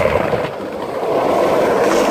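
Skateboard wheels rolling over pavement: a steady rough rolling noise that dips briefly about half a second in.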